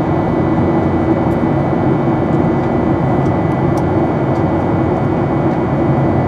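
Steady cabin roar inside a Boeing 737-800 in its climb after takeoff: the drone of its CFM56 turbofan engines and rushing air, with a thin steady whine over it.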